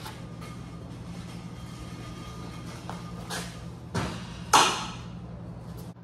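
Steel truck frame and suspension parts being handled: a few knocks, then a louder metal clank about four and a half seconds in, over a steady low hum.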